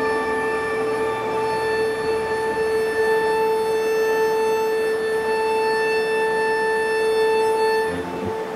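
A steady electronic drone: one held note with a stack of overtones, sustained without a break. A fainter low hum under it fades out about three seconds in.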